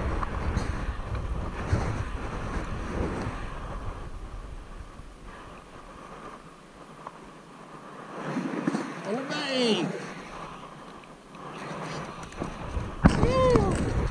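Wind rumble and rubbing from clothing on a body-worn camera's microphone, dying down about six seconds in. Around nine seconds a short pitched sound rises and falls twice, and similar pitched sounds come again near the end.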